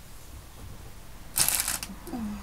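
A brief, loud crinkling rustle of craft materials being handled, starting about one and a half seconds in and lasting about half a second.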